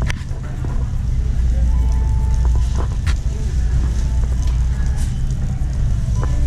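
A wire shopping cart rolling over a concrete store floor: a steady low rumble that grows about a second in, with scattered light clicks and rattles from the cart.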